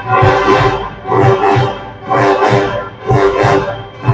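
Marching band of brass, saxophones and drums playing, in four loud punctuated phrases about a second apart, with drum beats underneath.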